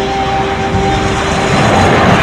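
Jet airliner sound effect: the noise of a low-flying jet growing louder as it comes in overhead, while held notes of soundtrack music fade out about a second and a half in.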